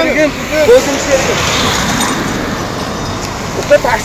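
A passing road vehicle: its tyre and engine noise swells and fades over about two seconds, between brief bits of speech.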